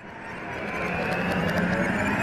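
A whooshing riser sound effect fading in from silence and swelling steadily louder: the build-up of an animated logo sting.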